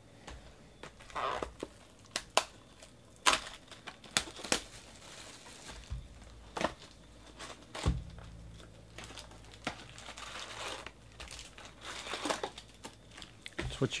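Plastic shrink-wrap being torn off a 2018 Topps Chrome Baseball jumbo card box and crumpled, a run of sharp crackles and snaps, while the box is opened and its foil packs handled.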